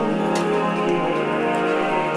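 Vocal ensemble singing Renaissance polyphony in a vast cave, holding sustained chords. A single sharp tick sounds about a third of a second in.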